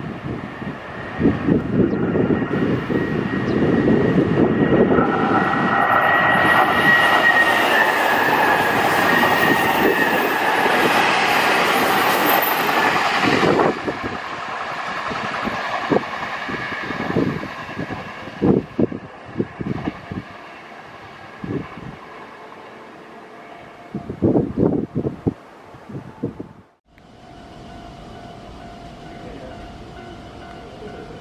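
A Nankai 10000 series electric limited express train passes close by: a loud rush of wheel and running noise with a faint high whine, which drops away about halfway through. A run of irregular clacks follows as the wheels cross rail joints and points.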